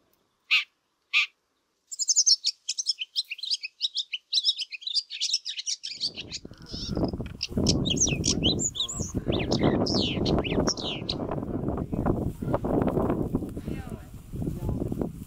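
Small songbird giving a fast, jumbled run of high chirps and twitters for about nine seconds, after two short calls near the start. A low rumbling noise comes in about halfway through and carries on under the chirps.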